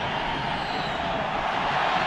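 Stadium crowd noise from many spectators, a steady, even wash of sound with no single voice standing out.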